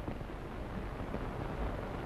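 Steady low hiss and rumble with no distinct events: the background noise of an old film soundtrack between lines of dialogue.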